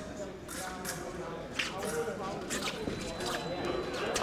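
Fencers' footwork on the strip: scattered short stamps and shoe squeaks over the murmur of talk in a large hall.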